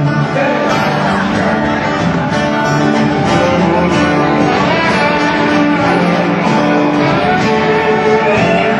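Live band playing an instrumental passage: acoustic guitar strummed under a lap steel guitar playing gliding slide notes.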